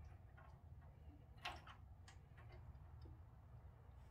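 Near silence over a low hum, with a few faint clicks and taps from gloved hands handling a glass jar of pickled eggs; the clearest click comes about one and a half seconds in.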